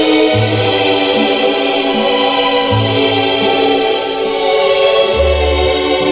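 String-orchestra light music: sustained chords held over a few separate low bass notes.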